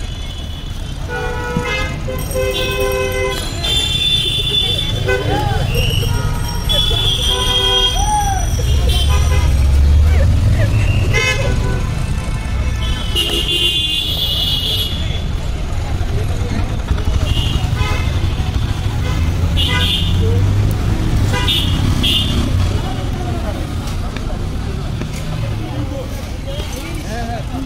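Street traffic rumbling, with vehicle horns tooting several times, mostly in the first half and again about halfway through. Voices can be heard in the background.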